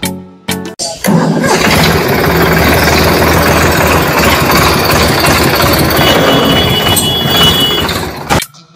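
A small model engine, just pull-started with a string, starts about a second in and then runs steadily at a constant pitch.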